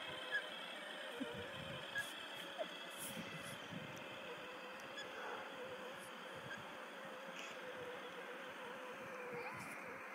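Battery-powered ride-on toy quad's electric motors and gearbox whining faintly and steadily as it drives across grass, in its low-speed setting, with a few faint clicks in the first few seconds.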